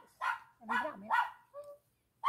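A dog barking, about four short sharp barks in quick succession.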